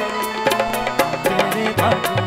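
Harmonium playing a melody over tabla strikes in an instrumental passage of a folk song, with no singing.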